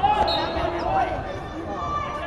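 Spectators shouting in a gymnasium during a wrestling match, loudest just at the start and again about a second in, with dull thumps of bodies on the mat.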